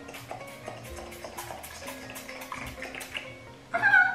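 Background music with plucked guitar notes; a short voiced exclamation near the end.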